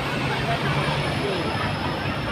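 Steady city traffic noise with a low engine hum, with faint voices of people nearby.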